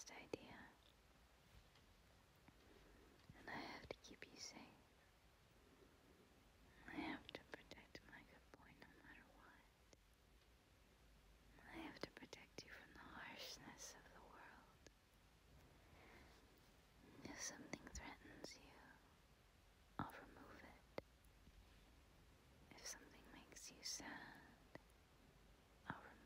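A woman whispering softly in short phrases, with pauses of a few seconds between them.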